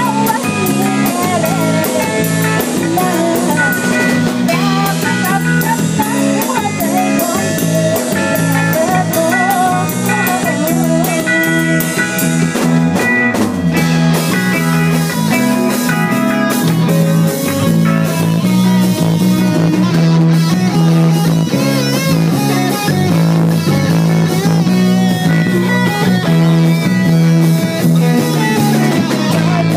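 Live rock band playing an instrumental passage: electric guitar playing bending lead lines over bass guitar and drum kit.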